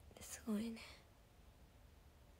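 Only speech: a young woman says a short, soft "sugoi ne" ("amazing, isn't it") near the start, then faint room tone.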